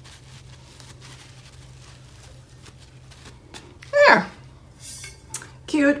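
Faint rustling and light rubbing of a paper towel blotting a freshly applied water slide decal on a tumbler, over a low steady room hum. About four seconds in comes one short vocal exclamation that falls steeply in pitch, and near the end a spoken word.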